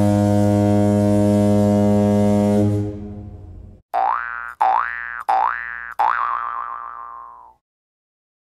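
Comic sound effects: a low, steady horn-like blast that fades out about three seconds in. It is followed by four quick rising 'boing' sounds, the last one wobbling as it dies away.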